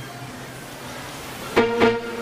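A pause between songs in a banquet hall: steady room noise and guest chatter, then two short, pitched instrument notes from the band near the end.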